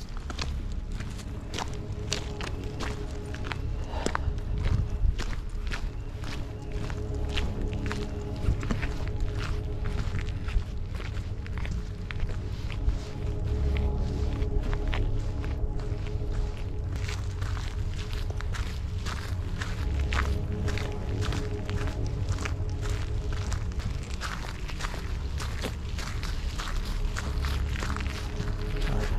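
Footsteps walking, many irregular steps, over a low, steady ambient music drone.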